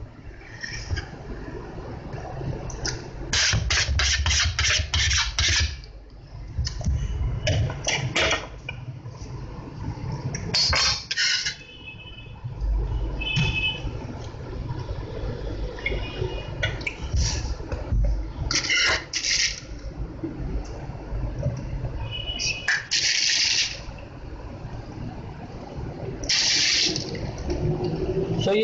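Handling noise from a frosted cake on a cardboard cake board being lifted and moved by hand: irregular bursts of quick scrapes, rustles and clicks, with a low rumble between them.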